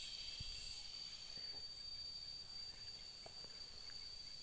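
Faint, steady high-pitched drone of insects, with a few soft ticks.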